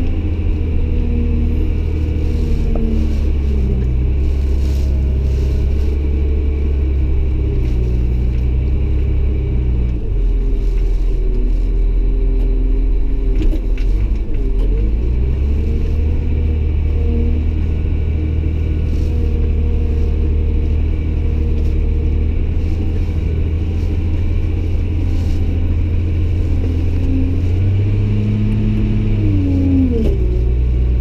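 Caterpillar 966 wheel loader's diesel engine running under load, heard from inside the cab. Its pitch drops and climbs again several times as the operator drives and works the bucket, with a rise in revs near the end.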